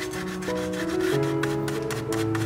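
Flat paintbrush scrubbing acrylic paint across a stretched canvas in repeated back-and-forth strokes, a dry rasping rub, over background music of sustained notes.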